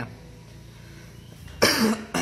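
A man coughs once, sharply, about one and a half seconds in, after a short lull with only a low background hum.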